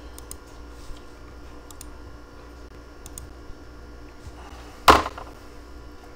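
A few light clicks from a computer mouse and keyboard over a steady room hum, with one louder sharp knock about five seconds in.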